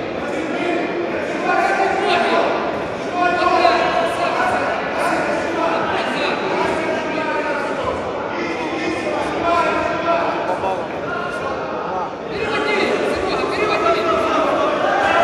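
Men's voices shouting and talking in an echoing sports hall: coaches calling out instructions to grapplers mid-match, over background chatter.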